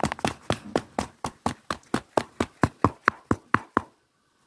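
Rapid run of sharp ASMR taps, about six a second, that stop just before the end.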